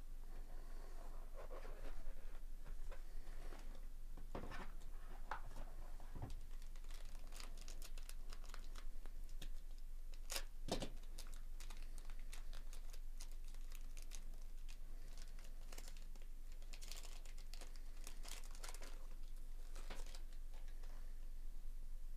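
Plastic and foil wrapping on a sealed trading-card box and pack being torn and crinkled by gloved hands. Faint crackling runs throughout, with denser bursts around the middle and again near the end.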